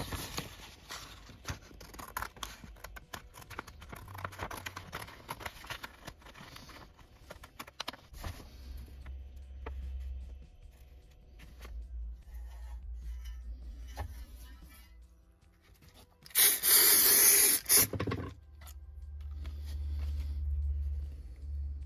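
A printed paper sheet rustling and crackling as it is handled and cut out with scissors, busiest in the first eight seconds. Near the end comes a loud tearing noise lasting about a second and a half, the loudest sound here.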